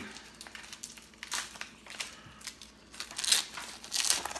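A foil trading-card pack wrapper being torn open and handled by hand: irregular crinkling and crackling, loudest about three seconds in.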